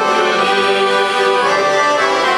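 Accordions playing a hymn melody in held notes and chords, an instrumental passage without singing.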